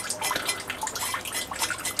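Light, irregular clicks and taps of a steel cleaver on a wooden chopping board as chopped coriander is handled and brushed off the blade.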